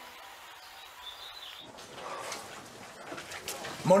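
A music chord fading out, then faint outdoor ambience: a brief high chirp about a second in and a steady hiss of water falling from a fountain's water curtain.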